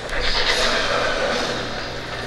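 Sound-design whoosh for a video transition, swelling over about half a second and then fading, laid over a steady low ambient bed with a click right at the start.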